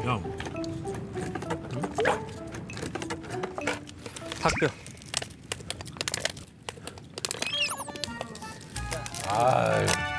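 Light background music from the show's edit, with scattered short clicks and a quick high sliding whistle effect shortly before the end, and a voice coming in during the last second.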